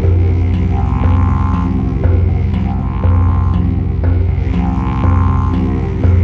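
Instrumental spa music: a low didgeridoo drone with a pulse about once a second, and tongue drum notes ringing over it.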